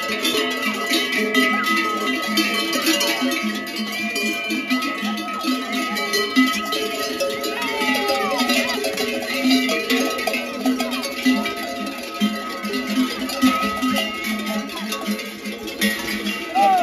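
Many large cowbells on Podolica cattle clanking continuously and irregularly as the herd mills about, the clangs of different bells overlapping.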